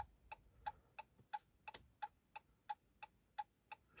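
Chrysler 200's hazard flashers ticking faintly inside the cabin, a steady even click about three times a second.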